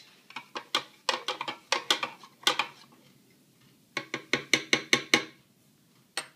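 A small metal spoon clinking against the inside of a measuring cup while stirring water: scattered clinks, a pause, then a quick run of about nine clinks about four seconds in.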